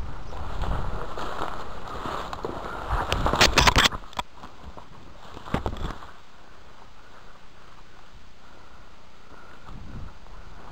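Footsteps and the rustle and crackle of branches and undergrowth brushing past a body-worn camera as a player pushes through dense woodland brush, with wind-like rumble on the microphone. A louder burst of snapping and crackling comes about three to four seconds in, a shorter one near six seconds, then the steps go on more quietly.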